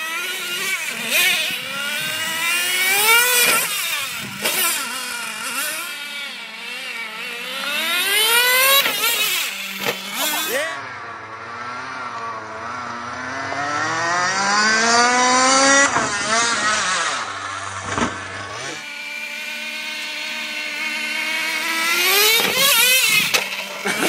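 Traxxas Revo nitro RC truck's small two-stroke glow engine revving up and down repeatedly as the truck drives and jumps. In the middle stretch the engine's pitch is lower and glides slowly.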